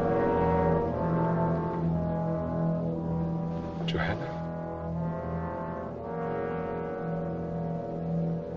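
Orchestral film score playing slow, sustained chords over a steady low held note, with a brief sharper accent about four seconds in.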